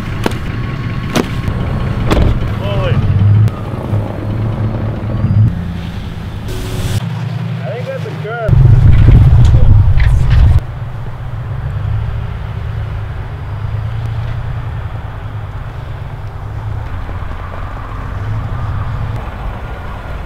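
A truck driving with its engine running steadily as a low rumble, broken by a few clicks and knocks. About eight and a half seconds in, a much louder low rush takes over for about two seconds, then the steady rumble returns.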